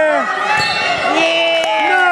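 Spectators yelling long, drawn-out calls as a wrestler holds his opponent down for a pin, with two sharp thumps, one about half a second in and one near the end.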